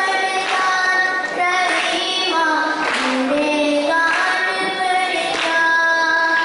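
A child singing a slow melody of long held notes into a microphone, heard through the stage loudspeakers.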